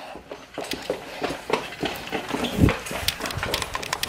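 Footsteps and light clatter on a concrete floor: irregular taps and knocks, with one heavier low thump a little past halfway.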